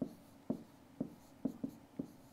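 Stylus tapping and stroking on a pen tablet while handwriting letters: a series of short, light clicks about two a second, one pair close together near the end.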